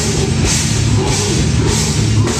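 Live metalcore band playing loud: drum kit, electric bass and guitar, with cymbal hits recurring a little under twice a second over a dense, heavy low end.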